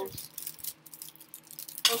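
Clear plastic food packaging being handled and opened: scattered small clicks and crinkles, with one sharp, louder click just before the end.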